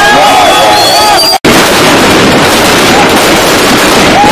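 A crowd of young men shouting. After a sudden cut about a third of the way in, a loud, distorted din of police gunfire into the air mixed with crowd noise, fired to disperse the crowd.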